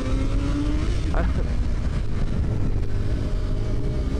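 Motorcycle engine running at low speed, its pitch rising gently over the first second as it pulls away, then settling into a steady low rumble.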